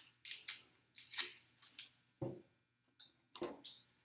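Double-sided grip tape being peeled and torn off its roll: a string of short, faint crackling rips, with one duller knock a little past halfway.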